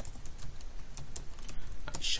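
Typing on a computer keyboard: a quick, uneven run of key clicks as a short phrase is typed.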